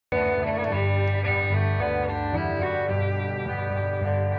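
Live acoustic country band playing a song's instrumental intro: acoustic guitar strumming under a fiddle melody, starting abruptly at the very beginning.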